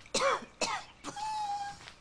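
A woman coughing twice, an acted flu cough, then a thin, drawn-out vocal call held at one pitch.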